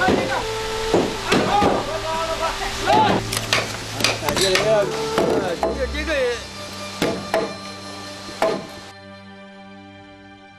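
Hand carpentry on heavy timber: irregular sharp hammer knocks on wood, about a dozen over nine seconds, as a chisel is driven into a mortise in a beam. The knocking stops near the end, leaving soft background music.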